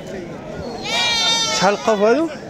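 A goat bleating loudly, one long quavering call about a second in.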